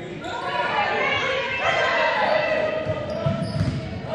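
Spectators' voices calling out in a gymnasium over a basketball game, with a basketball bouncing on the hardwood court; a few quick low thuds of the ball come about three seconds in.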